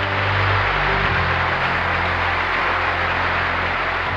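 Sustained applause from a large audience, with a low, steady music bed underneath.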